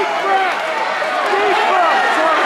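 Spectator crowd talking and calling out over one another, a steady babble of many overlapping voices.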